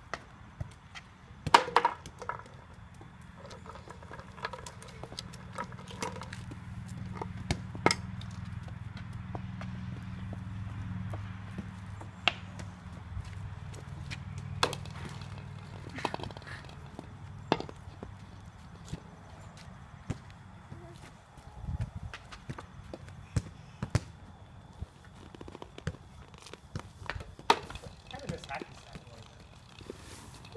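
Toddlers playing with a plastic tee-ball set: scattered sharp taps and knocks of plastic against plastic and concrete, with brief bits of child babble. A low steady drone sits underneath from a few seconds in until past the middle.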